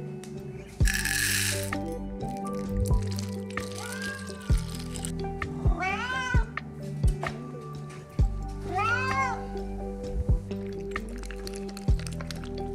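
A domestic cat meowing for its dinner: three bouts of arching meows, several in quick succession around the middle, over background music with a steady beat. A short rush of noise comes about a second in.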